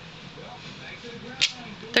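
A clear acrylic stamp block being pressed onto cardstock on a desk. There is a single short, sharp click from the block about one and a half seconds in.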